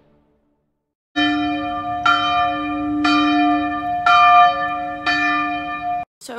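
A bell ringing, struck five times about a second apart, each stroke ringing on into the next; it starts about a second in, after a moment of silence.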